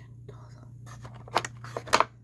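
A woman whispering to herself in short, breathy bursts, loudest near the end.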